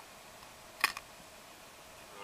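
A single sharp click a little under a second in, followed by a fainter one just after, over a low steady hiss.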